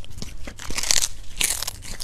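A cat chewing a small whole raw fish, with repeated wet crunches as it bites through it. The loudest crunches come about a second in and again half a second later.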